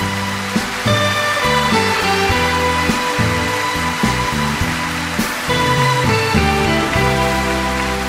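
Orchestra with strings playing the instrumental ending of a slow Japanese ballad, settling onto a held chord about seven seconds in. Studio audience applause runs beneath the music.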